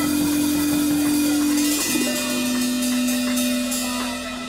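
Live blues band (electric guitar, Hammond organ, bass and drums) sustaining a long held chord over washing cymbals near the song's ending. The held notes move to a new chord about halfway through.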